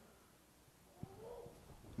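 Near silence: room tone, with a faint click about halfway through, followed by a brief faint pitched sound.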